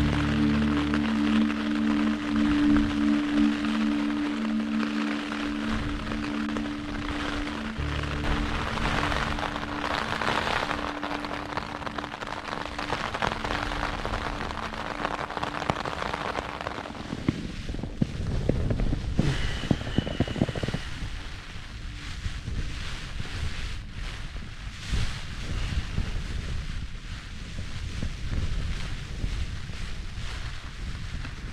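Soft ambient music with long held tones over a rushing patter of rain and wind on a Hilleberg Soulo BL tent's fabric; the music fades out about halfway through, leaving the rain and gusts beating on the tent alone.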